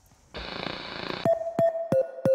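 A short burst of hissing noise, then electronic synthesizer music with drum-machine beats starting just over a second in, about three beats a second, the synth stepping between two notes.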